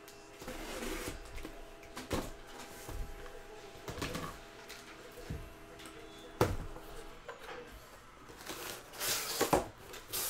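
A cardboard box being handled and opened: scrapes and knocks of cardboard, with a sharp knock about six seconds in and a louder rustling scrape near the end.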